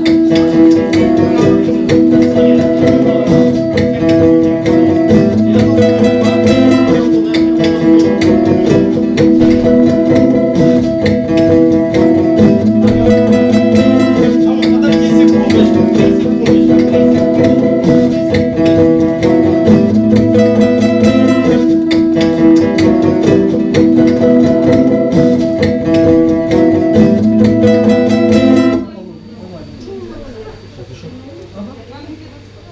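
Steel-string acoustic guitar strummed fast and steadily, the same chord pattern repeating; the playing stops abruptly near the end.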